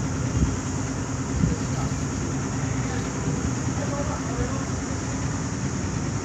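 Steady low rumble of outdoor background noise, with faint voices in the background.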